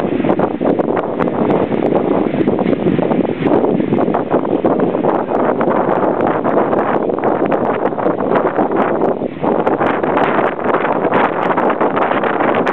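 A steam train on the move, heard from an open carriage window: a loud, continuous rush of running noise with many short clicks from the train, and heavy wind buffeting the microphone.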